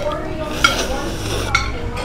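A spoon and chopsticks clinking and stirring against a soup bowl during eating, with a few sharp clinks that ring briefly.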